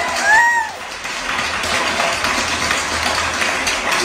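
Applause with cheering, the clapping going on steadily, and one short rising-and-falling whoop about half a second in.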